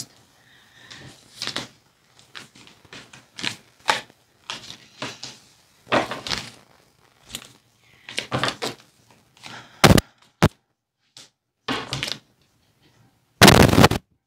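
A deck of oracle cards being shuffled by hand: a run of irregular soft card flicks and rustles, with a sharp knock about ten seconds in and a louder short burst of handling noise near the end.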